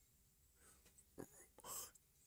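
Near silence, with a faint whispered voice briefly in the second half.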